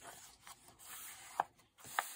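A hand rubbing across the paper pages of an open paperback coloring book, pressing them flat, with a few sharp paper ticks, the loudest about a second and a half in.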